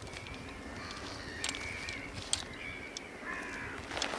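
Birds calling on the shore in a string of drawn-out, harsh calls, each about half a second to a second long. A few sharp clicks and crunches of footsteps on shingle and a tripod being handled cut in, the loudest about two seconds in.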